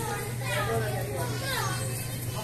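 Scattered background voices and calls of players and spectators around a basketball game, with one falling shout in the second half, over a steady low hum.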